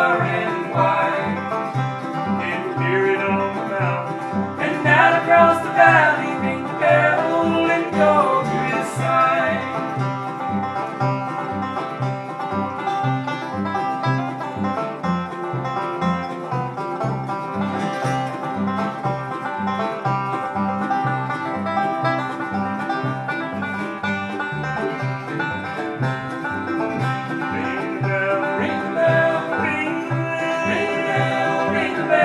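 Acoustic bluegrass band playing an instrumental break: five-string banjo picking over acoustic guitar and an upright bass keeping a steady beat.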